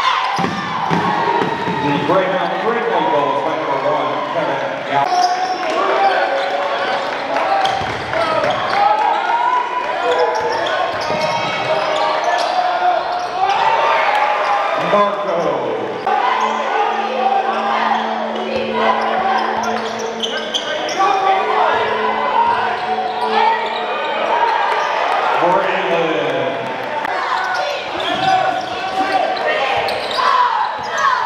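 Basketball being dribbled on a hardwood gym floor, with many voices of players and spectators echoing in the hall.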